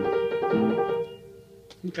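Piano playing a loose blues rhythm: low chords struck about every 0.8 s over held upper notes. The playing stops about a second in and the notes ring out.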